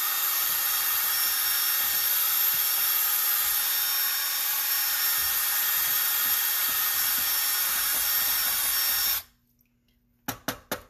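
Cordless drill spinning a mixing paddle at high speed in a bucket of glaze slurry, a steady, even whirr that stops suddenly about nine seconds in.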